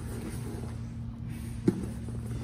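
Bodies shifting and scuffling on a foam grappling mat, with one short sharp thud near the end, over a steady low room hum.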